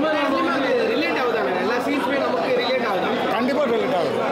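Speech only: a man talking, with other voices chattering in the background.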